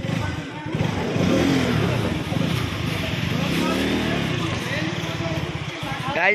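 KTM RC 200's single-cylinder engine running as the motorcycle is ridden, the revs rising and falling twice.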